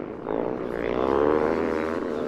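Racing motocross motorcycle engines revving hard as bikes accelerate past, the sound swelling to its loudest about halfway through and then easing off.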